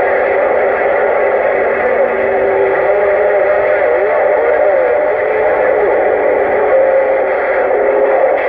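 Uniden Grant XL CB radio receiving on channel 6 (27.025 MHz): loud, steady static with wavering, gliding whistles from overlapping carriers, and no clear voice.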